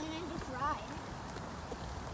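A child's voice calls out briefly twice in the first second, over the steady low rumble of riding on a paved path: bike tyres rolling and wind on the microphone.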